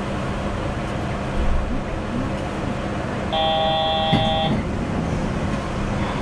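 Steady hum of a Yurikamome automated guideway train standing at a station, with a short low bump about a second and a half in. About three seconds in, an electronic tone of several pitches at once sounds once for just over a second.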